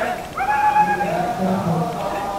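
Group of Naga warrior dancers singing their folk war song in chorus, with a high held call about half a second in over the lower male voices.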